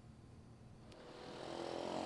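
A pause with near silence for about a second and one faint tick, then a faint background noise that swells steadily towards the end.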